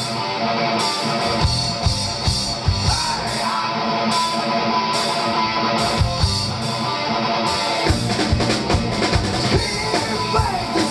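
Live rock band playing loudly: electric guitar and bass over a drum kit, with the drumming getting busier near the end.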